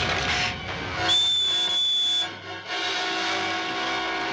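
A single shrill whistle blast with a rush of hiss, starting about a second in and lasting just over a second, over dramatic orchestral film-score music.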